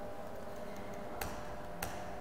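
Two computer keyboard keystrokes, a little over a second in and again about half a second later, over a faint steady hum.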